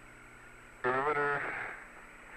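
Radio-link hiss and hum from the Apollo air-to-ground voice loop, with a brief stretch of a man's voice over the radio near the middle, under a second long.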